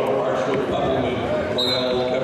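Indistinct voices calling out in a gym, with a thin high steady tone starting near the end.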